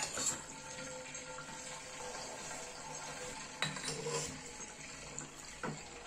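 Laboratory glassware being fitted together by hand, with a few light glass clinks, over a faint steady hiss.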